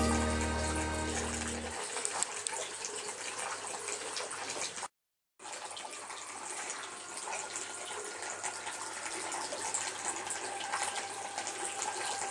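Water trickling and splashing down the miniature waterfall and stream of a model nativity scene, a steady fine splashing. Held music notes fade out about two seconds in, and all sound cuts out for a moment near the middle.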